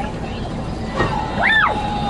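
A short, high-pitched excited cry from a person, about halfway through, over a steady low rumble.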